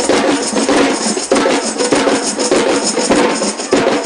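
Samba-style drumming band playing a fast, steady rhythm on snare drums and hand-held percussion.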